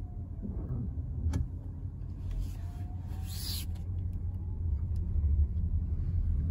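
Cabin sound of a 2023 VW ID.4 Pro RWD electric SUV pulling away at low speed: a steady low rumble from the tyres and road, with no engine note.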